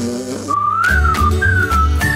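A whistled tune with gliding, bending pitch over a cartoon music cue with a pulsing bass; the whistling comes in about half a second in.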